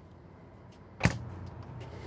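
Compact RV refrigerator door swung shut, closing with a single sharp knock about a second in.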